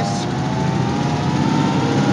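Willys Whippet engine running under way, heard from inside the cabin. Its pitch climbs slowly as the car gathers speed, and the engine seems to have plenty of power.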